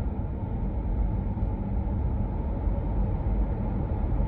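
Steady low road and engine rumble of a moving car, heard from inside its cabin.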